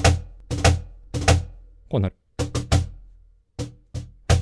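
Cajon played with the hands in the drag rudiment: quick light finger taps come just ahead of each main stroke, several times over. Each main stroke rings out with a low boom.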